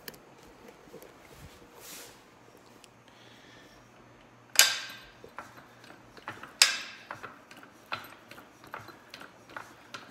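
Metal clanks and clicks from an aluminum hydraulic motorcycle lift jack being worked: a quiet start, two sharp clanks about halfway through, then lighter clicks about two a second as the handle is pumped and the lift platform begins to rise.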